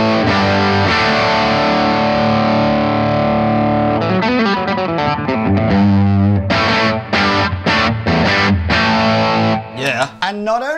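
Electric guitar played through a Blackstar HT-5R MkII valve combo, its clean channel pushed by a pedal into a distorted tone. A long chord rings for about four seconds, then shorter chopped chords follow with brief gaps between them.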